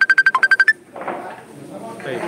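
A phone ringtone: a fast run of about a dozen high electronic beeps, with one lower and one higher note in the tune, stopping under a second in. Murmuring voices follow.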